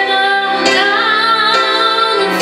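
A woman sings a slow ballad into a microphone over musical backing. A little under a second in she holds a long, wavering note.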